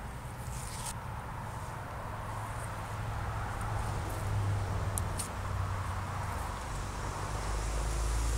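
Steady outdoor background noise with a constant low hum, and a few faint clicks about one and five seconds in.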